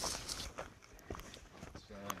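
Faint footsteps and rustling of dry leaves and brush, with scattered small clicks.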